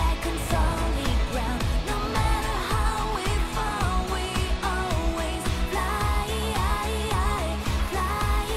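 Pop song: a voice singing a melody over instrumental backing with a steady drum beat.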